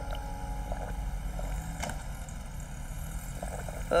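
Low, steady outdoor rumble with a few faint clicks.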